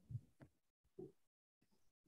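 Near silence on a video-call audio line, broken by three faint, brief low sounds in the first second.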